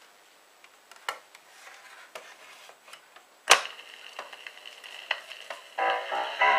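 A 45 rpm vinyl single being slid into a Penny portable record player: a few light clicks, then a sharp clack about three and a half seconds in as the record seats and the player starts, followed by a faint steady hiss of the turning record until the music begins at the very end.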